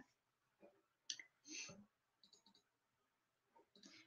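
Near silence, broken by a few faint, short clicks.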